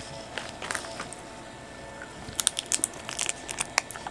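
Someone eating a chewy condensed-milk candy close to the microphone: a cluster of small clicks and crackles in the second half, quiet at first.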